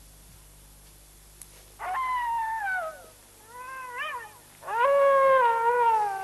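An animal's long howling calls, three in a row. The first falls in pitch, the second rises and falls, and the third, the loudest, is held and then slowly falls.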